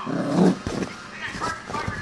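A small dog barking once, loudest about half a second in, during play.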